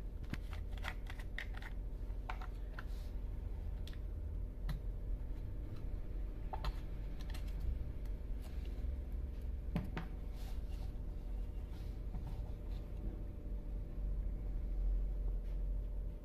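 Scattered small plastic clicks and crinkles as a plastic bottle of two-stroke oil is handled and its screw cap and foil seal are opened, over a steady low hum.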